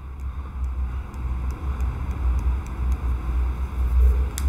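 Low, uneven rumble of background noise, with a few faint, light ticks scattered through it.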